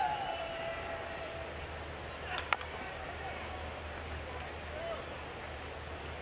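Ballpark crowd murmur with one sharp crack about two and a half seconds in as a pitch reaches the plate, from the ball meeting the bat or the catcher's mitt.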